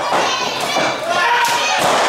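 Wrestler's body hitting the canvas of a wrestling ring: a thud about one and a half seconds in and another near the end, over a small crowd's voices and children shouting.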